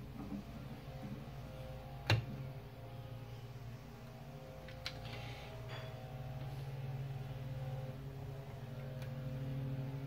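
A steady low hum runs under the desoldering of a capacitor from a circuit board, with one sharp click about two seconds in and a lighter tick near five seconds.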